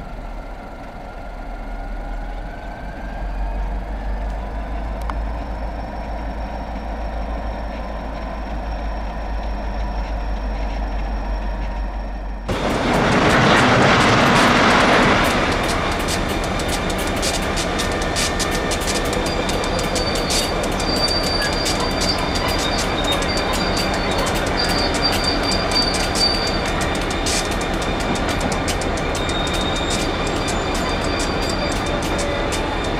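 EMD SD40 diesel locomotives moving slowly at the head of a train of rock-loaded side dump cars, with a steady low engine rumble. About halfway through comes a loud rush of noise for about three seconds as an air-operated side dump car tips and unloads its rock, followed by steady noise with many sharp clicks and a thin, intermittent high squeal.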